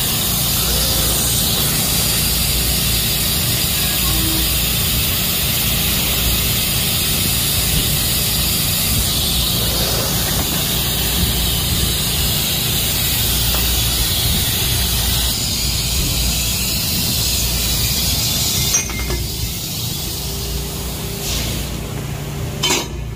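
Pipe laser cutting machine cutting a steel pipe: a steady, loud hiss over a low machine hum. About 19 seconds in it stops with a sharp click and the noise falls to a quieter background.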